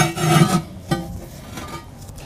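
Ceramic firebox scraping against the ceramic body of a kamado grill as it is turned and seated, a rough gritty scrape with a faint ring that is loudest in the first half-second, then a shorter scrape about a second in.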